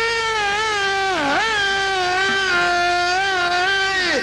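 A man singing one long, held note high in his voice, in traditional Uzbek style, ornamented with a quick dip in pitch about a second in before it settles slightly lower for the rest.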